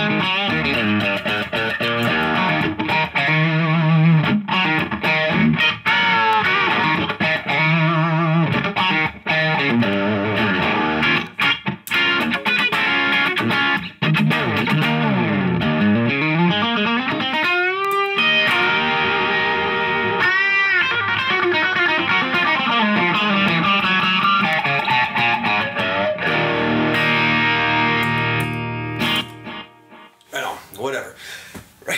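Overdriven electric guitar: a Telecaster with Bootstrap Pretzel pickups played through a Line 6 Helix modelling a Matchless amp's second channel with a Timmy overdrive, playing a well-known riff with string bends. It ends on a held chord that rings for a few seconds and cuts off just before the end.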